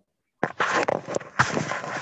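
Garbled, crackling audio of a voice breaking up over a failing video-call internet connection, cutting in after a moment of dead silence.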